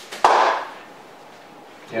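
A single sharp click about a quarter second in, with a short rushing tail that fades within half a second.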